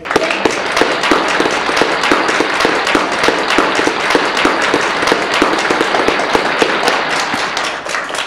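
A small audience applauding: many hands clapping continuously, with one clapper close to the microphone standing out in a steady beat. The applause eases slightly near the end.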